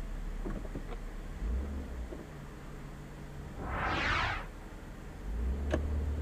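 Car engine running low and steady, heard from inside the cabin, with a brief rush of noise that swells and fades about four seconds in.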